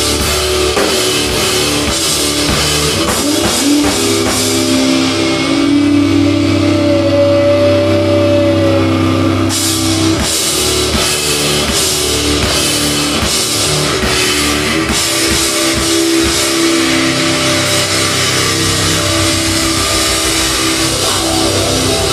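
A live heavy rock band playing loudly: amplified electric guitars and bass guitar over a drum kit, with cymbals hit repeatedly from about halfway through.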